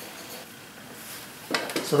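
Quiet room tone with a faint, even hiss, then a man's voice begins near the end.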